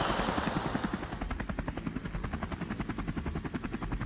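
Helicopter rotor chopping steadily, about eight beats a second, while a noisy wash fades out during the first second.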